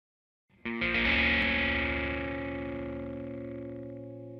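A distorted electric guitar chord struck about half a second in and left to ring, slowly fading.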